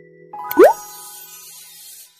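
Cartoon 'bloop' sound effect for an animated subscribe button: a quick upward pitch glide a little over half a second in, followed by a fading sparkly shimmer.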